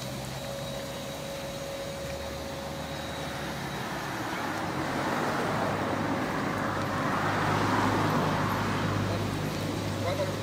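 Street traffic: a steady road hum with a vehicle passing close by, swelling from about halfway through to its loudest near the end.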